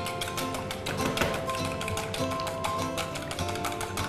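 A wire whisk clicking rapidly against a stainless steel bowl as egg yolks are beaten, about seven or eight clicks a second, over background music.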